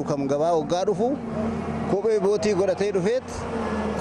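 A man talking, with a motor vehicle's engine heard behind his voice from about a second in until shortly before the end.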